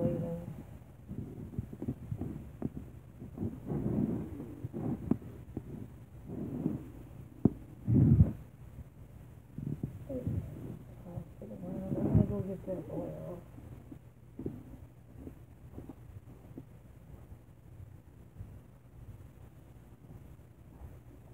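Kitchen things handled close to the microphone: irregular knocks and bumps, the loudest a thud about eight seconds in, with a short murmur of voice around twelve seconds.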